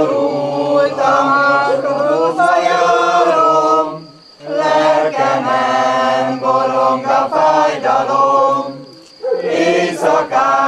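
A mixed group of amateur men and women singing a hymn together without accompaniment, in long sustained phrases. There are short breath pauses about four seconds in and again near the end, before the next line starts.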